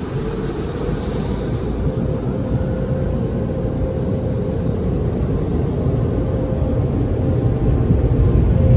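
Automatic car wash running over a car, heard from inside the cabin: a steady, loud rushing noise with a steady hum through it, growing a little louder toward the end.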